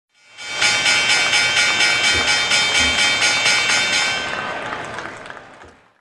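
Logo intro sting: a bright, sustained synthesized chord that pulses about four times a second, swelling in quickly and fading out near the end.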